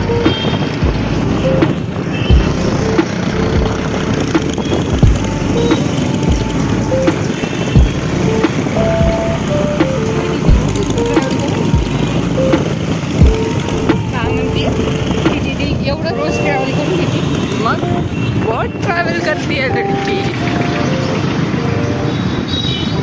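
Scooter ride through city traffic: wind rumbling and buffeting on the microphone over road and engine noise, with a melody of short held notes, likely a song with singing, playing over it.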